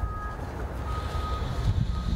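Wind rumbling on an outdoor microphone, with a thin, high electronic beep that keeps sounding and stopping, on for about half a second at a time.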